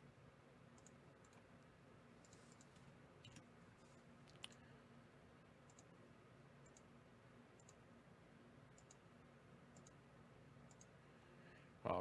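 Faint computer mouse clicks, a handful scattered over near-silent room tone with a low steady hum. One click is a little louder about four and a half seconds in. The mouse is clicking a web page button again and again to re-randomize a list.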